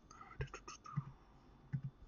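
Faint muttered, half-whispered speech: a man talking under his breath in short broken syllables.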